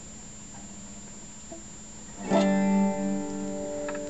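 A guitar chord strummed once about two seconds in and left ringing.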